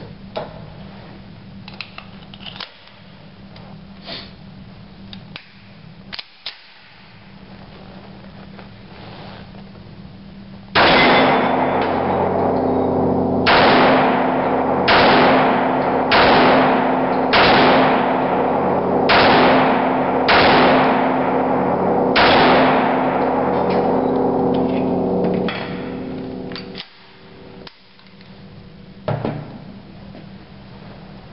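Dan Wesson Heritage 1911 pistol in .45 ACP fired eight times, at about one shot every one to two seconds, each shot echoing along a concrete indoor range. A few small clicks come before the shooting.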